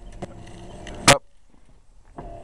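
Electric window motor in the rear door of a 1964 Imperial running steadily for about a second, then a short sharp sound as it stops; the word "up" is spoken at the same moment.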